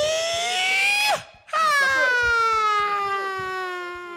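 A man's long drawn-out hype shouts into a microphone: one cry rising in pitch for about a second, then after a brief break a longer cry slowly falling, an excited reaction to the end of a rap battle verse.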